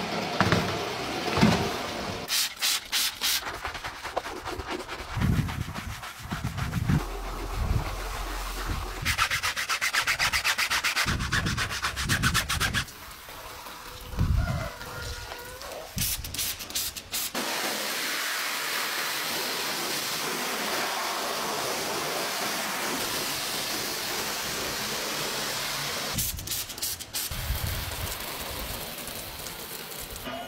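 Rubbing and scrubbing noises over a hissing background, with a few bursts of rapid ticking and a steadier stretch of hiss in the second half.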